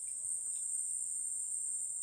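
Forest insects giving a steady, high-pitched drone that does not break.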